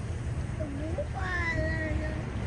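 A high-pitched human voice making a few short wordless sounds about half a second in, then a longer drawn-out call about a second in. Under it runs a steady low rumble of boat motor and wind.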